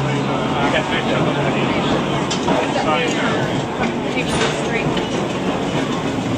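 Old electric tram running along its street track: a steady rumble and rattle of the car, with a low hum that stops a couple of seconds in.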